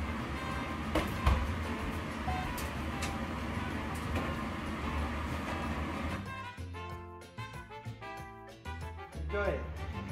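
Kitchen background with a low hum, faint voices and a few light clicks. About six seconds in it gives way to background music alone, a melody of clear stepped notes.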